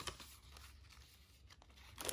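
Faint rustling of paper as the thick, layered pages of a handmade junk journal are handled and turned, with a light tick near the start and another about a second and a half in.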